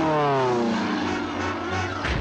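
Cartoon sound effect of a firework rocket diving: a whine that falls steadily in pitch over about a second, then holds low.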